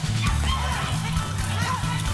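Live Afrobeat band playing a steady bass line with busy percussion, with short sliding vocal cries over the top.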